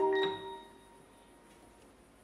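Symphony orchestra ending a soft held chord, with a single struck high chiming note that rings away within about half a second. Then a pause in the music with only faint room sound.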